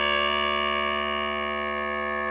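A low clarinet holding one long, steady low note, rich in overtones, easing off slightly in loudness.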